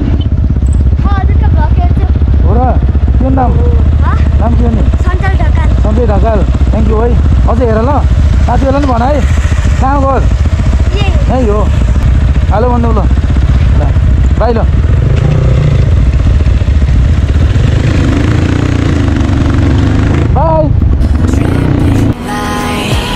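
A Crossfire dirt bike's engine running low and steady at near-idle. Short, high-pitched spoken phrases sound over it for most of the first fifteen seconds.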